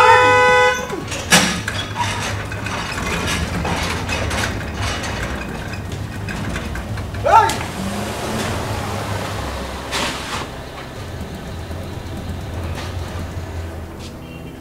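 A car horn held in one long steady blast that cuts off just under a second in, then a vehicle running at low speed with a few light knocks. There is a short vocal call about seven seconds in.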